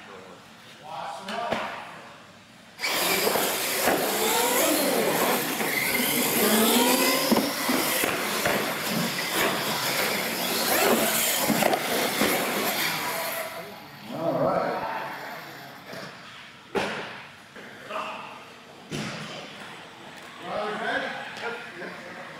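Two electric R/C monster trucks launch suddenly about three seconds in and race for about ten seconds, their motors whining up and down in pitch over a hiss of tyres on concrete, with people shouting. After the race come scattered voices and a few sharp knocks.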